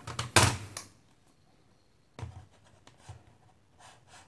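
Handling noise from a tablet and its plastic-and-metal keyboard dock being turned around and set together on a table: a short rush of scraping noise about half a second in, then a few faint knocks and bumps in the second half.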